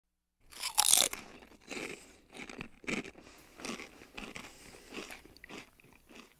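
Someone biting into and chewing crunchy chips: a loud first crunch about a second in, then about seven more crunching chews, roughly one every two-thirds of a second.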